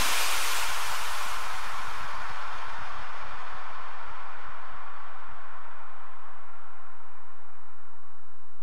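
A hiss of noise left behind when electronic background music stops, fading slowly away over several seconds above a faint low hum.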